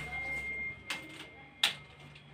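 Phone camera being handled on its ring-light stand: two sharp clicks about three quarters of a second apart, the second louder, over a faint steady high tone that stops at the second click.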